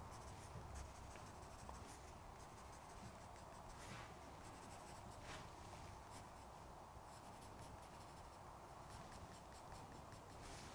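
Graphite pencil scratching faintly on drawing paper in many short strokes as fur is sketched in.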